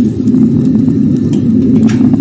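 Wok of soup at a hard boil over high heat, a steady low rumble, with a faint click near the end.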